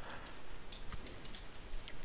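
A few faint, scattered clicks from a computer keyboard, over a low hiss.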